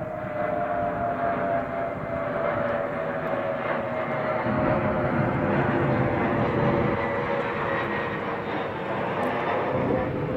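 Jet airliner flying overhead: a steady rush of engine noise with a thin whine that slowly falls in pitch as it passes.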